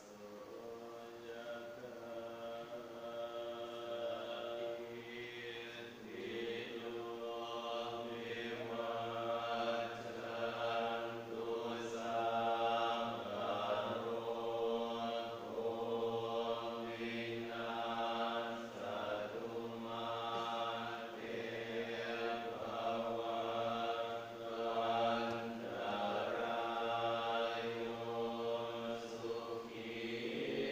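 Thai Buddhist monks chanting Pali in unison: a steady, low, drone-like group recitation that grows louder over the first several seconds and then holds.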